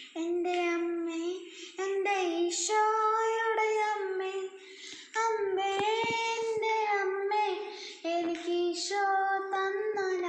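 A boy singing a Malayalam Marian devotional song solo and unaccompanied, in held, sliding phrases of one to three seconds with short breaths between them.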